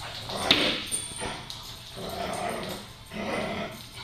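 Dogs vocalizing as they play-fight: a sharp bark about half a second in, then two longer drawn-out vocal sounds around two and three seconds in.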